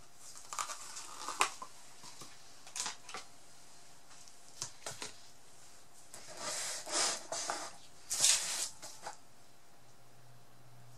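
Handling noises at a craft table: gloved hands setting down a plastic cup and then gripping and lifting a painted board off its cup supports, giving scattered clicks, taps and short rustling scrapes, the loudest a little after eight seconds in.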